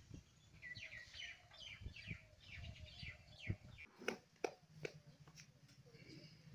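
Faint bird chirping: a quick run of short, falling chirps in the first half, followed by a few sharp clicks.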